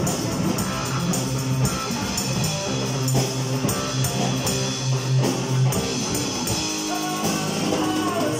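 Live rock band jamming: electric guitar, bass guitar and drum kit playing together, with a held low bass note through the middle.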